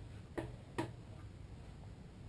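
Two faint, short clicks about half a second apart as a plastic mixing bucket is handled and wiped out with a small sponge.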